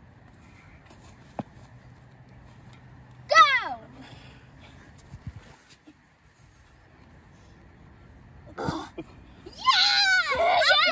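Quiet outdoor background broken about three seconds in by a child's short, high squeal that falls in pitch, and near the end by a child's loud, high, wavering shout.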